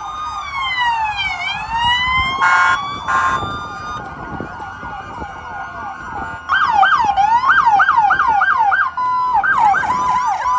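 Several police car sirens sound at once, really loud, with wails sweeping slowly up and down. Two short blasts come about two and a half seconds in, and fast yelping siren cycles take over from about six and a half seconds on.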